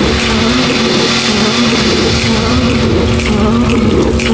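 Electroacoustic music made of layered, looped samples: sustained low tones with a slowly wavering pitch under a broad, rushing noise, with a few sharp clicks.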